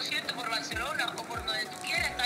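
A woman speaking Spanish over a video call, heard through a phone's speaker.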